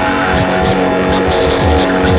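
Oldschool hardcore/darkcore electronic music: a steady beat of low drum hits about twice a second under held synth tones and dense high noise.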